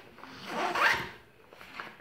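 Zipper on a makeup bag pulled in one quick stroke, rising in pitch, about half a second in.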